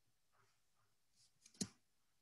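Near silence broken by one short, sharp computer mouse click about one and a half seconds in.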